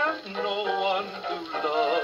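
1930 dance-band 78 rpm record playing on an HMV 102 portable wind-up gramophone, the band's melody carrying on between sung lines with wavering held notes.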